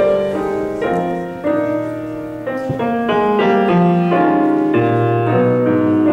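Grand piano playing jazz: a run of chords and melody notes, each struck sharply and left to ring.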